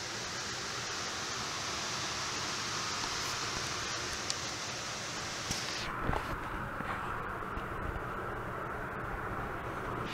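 Steady rushing air noise. About six seconds in, its upper hiss cuts off suddenly, leaving a duller rush with a few faint clicks.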